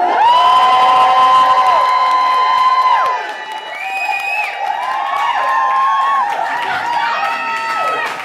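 Audience cheering and screaming. Long, high-pitched screams are held for the first three seconds, then shorter overlapping screams and whoops carry on over the crowd noise.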